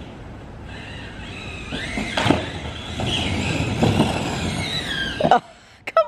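Skateboard and kids' kick-scooter wheels rolling on a concrete path: a steady rumble with a couple of knocks as the wheels cross the slab joints, and a high, wavering squeal over it. The rolling stops abruptly near the end.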